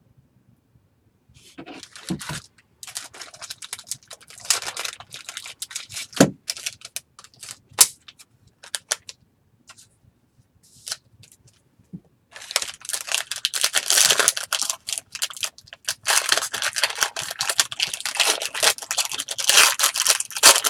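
Foil trading-card pack being handled and torn open by hand: irregular crinkling with a few sharp clicks, a short pause past the middle, then dense, continuous crinkling of the foil wrapper.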